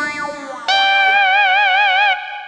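Film background music: a fading note, then from under a second in a single held note with a wide, regular vibrato.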